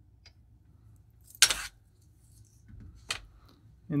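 A dive watch being handled on the steel platform of a kitchen scale: two sharp metallic clicks, about a second and a half apart, as it is lifted off.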